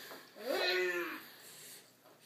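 A young child's single drawn-out vocal call, starting about half a second in, rising in pitch and then held steady before fading; a moo-like sound made in play.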